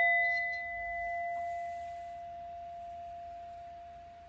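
A single struck bell ringing on with one clear tone over fainter higher overtones, slowly fading away.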